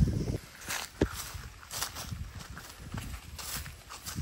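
Hooves stepping on dry ground and crop stubble, heard as scattered steps and rustles, with a sharper knock about a second in.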